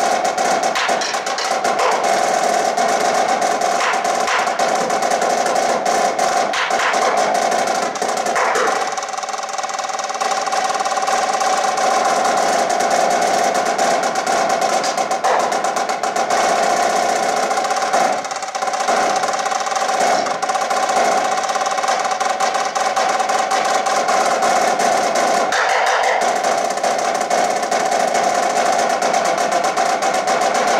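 A high-tension marching snare drum played solo: dense rolls and fast rudimental sticking with scattered accented strokes over the drum's steady high ring. It briefly drops softer about nine and eighteen seconds in.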